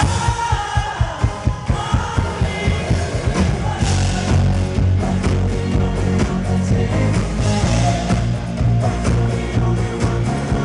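Live pop band on a concert PA: at the start the music switches to a steady drum beat, and bass and full band fill in about three and a half seconds in. A male lead vocal sings over it.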